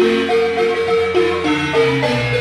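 Marimba music: mallets playing a melody in rolled, sustained notes over a lower bass line.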